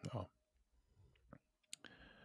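A short spoken "ja", then near quiet with a few faint, sharp clicks in the second half.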